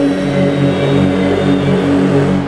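Electronic music from a live set: low, sustained synth and bass tones pulsing in a steady pattern, with the treble filtered down.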